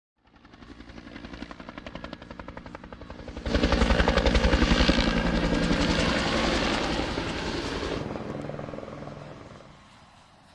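Helicopter rotor blades chopping in a fast, even beat. The sound fades in, jumps suddenly louder about three and a half seconds in, then fades away toward the end.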